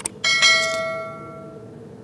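A mouse-click sound effect followed by a bright bell chime that rings out and fades over about a second and a half. It is the notification-bell sound of a subscribe-button animation.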